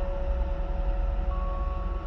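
Background music: soft sustained notes held over a low, steady droning rumble, with a second higher note coming in partway through.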